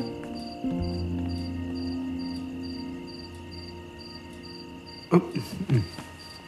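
Crickets chirping in short pulses about twice a second over a steady high insect ringing, with a low held music note that fades away. A brief voice sound breaks in near the end.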